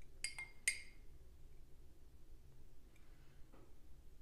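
A metal spoon clinking against glass three times in quick succession in the first second, with a bright ringing tone, as isopropyl alcohol is spooned out of a drinking glass. A faint small tap follows later.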